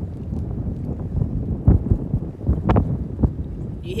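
Strong wind buffeting the microphone in a steady low rumble, with two louder gusts about a second apart midway.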